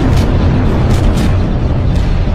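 Sci-fi space-battle sound effects: a continuous deep rumble of explosions with sharp laser-cannon shots, one about a quarter-second in and two close together around one second in.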